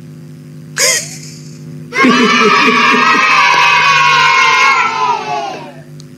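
A person's long, loud drawn-out yell over a video-call line. It starts about two seconds in, holds for nearly four seconds and sags slightly in pitch before trailing off.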